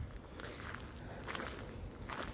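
Faint footsteps of a person walking, a few soft steps about half a second to a second apart, over a low background rumble.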